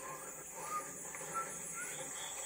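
A few faint, short bird chirps, thin rising notes spaced through the moment, over a steady hiss, heard through a television's speaker.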